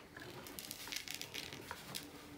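Loose glitter tipped from a small plastic tub onto glue-covered card: a faint, scattered patter of light clicks.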